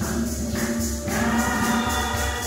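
A choir singing over a fast, steady jingling beat.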